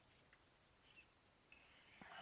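Near silence: faint outdoor room tone with a short, high bird chirp about a second in and a thin, high whistle over the last half second.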